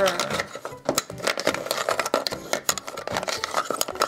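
Wooden toy spoon stirring flat wooden game pieces around inside a cardboard pot: a quick, continuous run of light clicks and clatter as the pieces knock together and against the pot.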